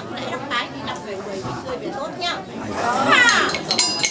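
Several people talking at once, with one voice calling out loudly about three seconds in. Just before the end a plucked string instrument starts playing.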